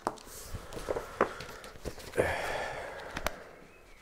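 Books and a fanzine being handled on a table: a few light knocks and a longer soft rustle of paper about two seconds in.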